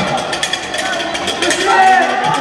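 Indoor basketball game noise: players and spectators calling out, echoing in a sports hall, over a quick clatter of footsteps and sneakers on the wooden court.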